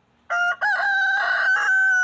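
Rooster crowing: a short first note, a brief break, then one long held note.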